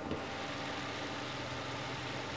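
A steady low hum with a faint even hiss, unchanging throughout, with no clear knock or clink.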